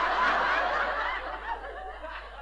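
Audience laughing in response to a punchline: a burst of laughter that is loudest at first and dies away over about a second and a half.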